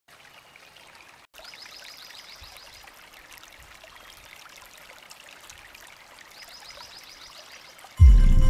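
Faint nature ambience: a trickling-water hiss scattered with small clicks, and a high, rapid trill heard twice, each time for about a second and a half. The sound cuts out briefly just over a second in.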